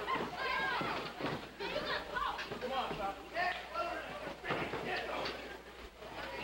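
A crowd of spectators shouting and talking over one another, no single voice clear, with a steady low hum underneath.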